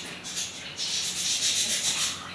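Hands sweeping through a layer of wet, freshly washed bird seed spread on a cloth sheet, a gritty rustle of grains. It comes as a short sweep at the start, then a longer, louder one from about a second in.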